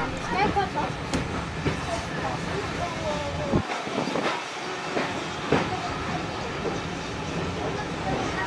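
Heritage steam train carriage running along the rails: a steady rumble with scattered clicks from the wheels, the low rumble dropping away for a moment about halfway through.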